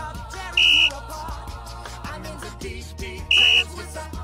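Two short, loud blasts of a referee's whistle, about two and a half seconds apart, over pop music with a singing voice.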